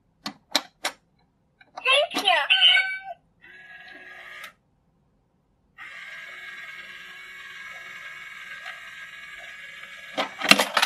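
Battery-powered stealing-cat coin bank: three light clicks as a coin is set on its plastic plate, then the toy's recorded cat meow, then its small electric motor whirring, briefly and then steadily for about four seconds, as the cat lifts the lid and reaches its paw out for the coin.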